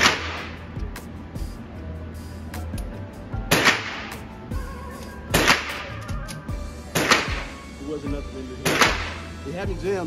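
Handgun shots fired in an indoor shooting range: five sharp reports, each with a short echo off the hard lane walls. One comes right at the start, then four more from about three and a half seconds in, roughly one and a half to two seconds apart.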